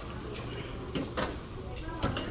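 Otis elevator doors sliding shut, with two short clicks about a second in.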